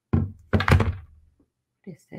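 Two dull thunks close together, the second louder, then short vocal sounds near the end.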